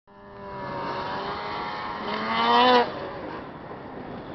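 Snowmobile engine revving hard as the sled climbs a snowy slope, its whine rising in pitch to its loudest about two and a half seconds in, then dropping away suddenly just before three seconds in as the sled pulls away.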